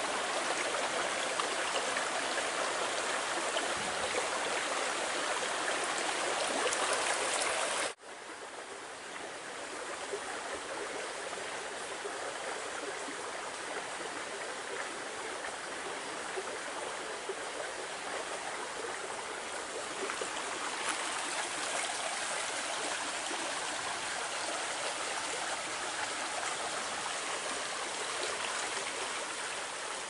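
Shallow creek running over stones: a steady rush of water. The sound drops abruptly about eight seconds in and comes back quieter, then slowly swells again.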